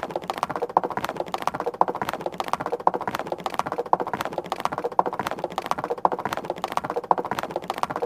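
A rapid, continuous run of sharp clicks or taps, many to the second, with a louder click about once a second; it starts suddenly and stops suddenly.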